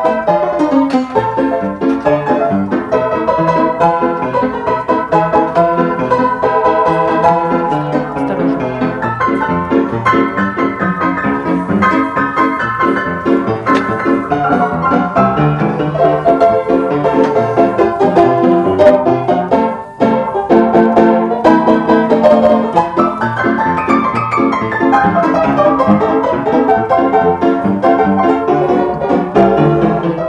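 Upright piano played continuously with dense, fast-moving notes, with a brief break just before twenty seconds in and a descending run a few seconds after.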